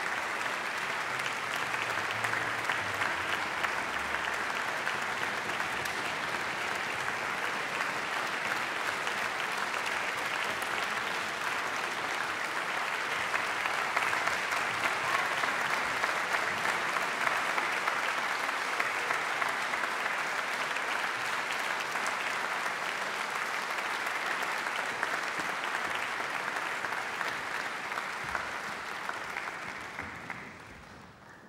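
A concert-hall audience applauding: a dense, steady clatter of many hands. It swells a little midway and fades out at the end.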